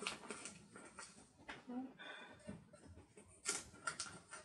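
Paper sticker sheet handled close to the microphone: soft rustling with short crackles and clicks as stickers are peeled from the backing, loudest in a burst about three and a half seconds in.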